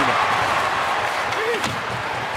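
Ice-hockey arena crowd noise, with a few sharp clacks and knocks of sticks, puck and bodies against the boards.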